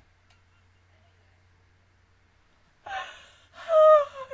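Near silence, then near the end a woman's sudden wordless excited cry in two loud bursts, the second louder and higher.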